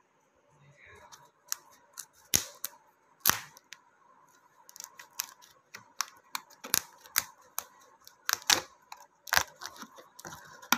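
Stiff plastic tape-wire strips of a woven tray being bent, tucked and trimmed by hand with a razor blade, making irregular sharp clicks and crackles, several of them louder snaps.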